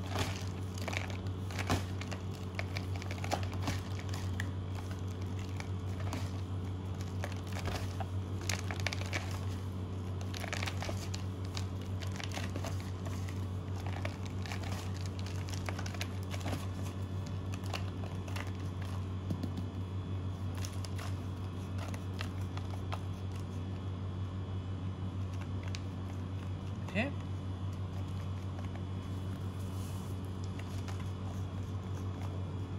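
Roasted flaked almonds rustling and crunching lightly as they are picked from a plastic tub and pressed by hand onto the side of a cake. The rustling is densest in the first two-thirds and thins out later. A steady low hum runs underneath.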